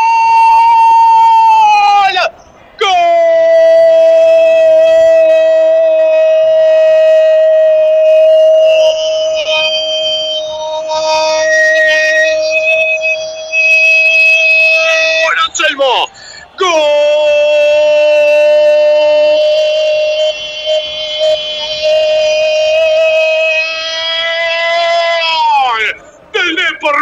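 A radio football commentator's long, sung-out goal cry, 'Gooool', announcing a goal. He holds it on one pitch in three long breaths: briefly, then for about thirteen seconds, then for about nine. The pitch drops away at the end.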